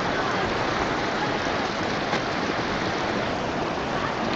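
Flash-flood water rushing down a dirt street, a steady, even rush of moving water.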